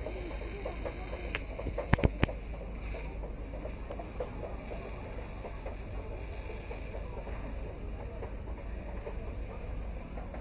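Night-market street ambience: an indistinct murmur of people and voices, with a few sharp clicks or knocks about one and a half to two seconds in.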